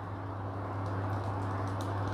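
A steel saucepan of water heating on an induction cooktop, not yet at the boil: a steady low hiss with a low hum underneath and a few faint ticks.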